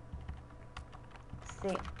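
Computer keyboard keys clicking: a few scattered keystrokes while code is being edited.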